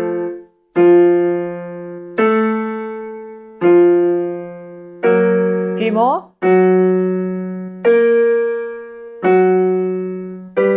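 Electronic keyboard on a piano sound playing a chord about every second and a half, each struck chord decaying before the next. The chords step through keys as accompaniment for a vocal range exercise. A brief rising glide cuts across about six seconds in.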